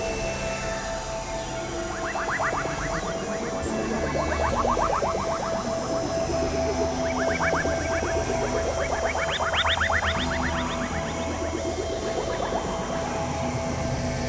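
Experimental electronic music: a steady held tone over low drones, broken three times by flurries of rapid clicks that sweep upward in pitch.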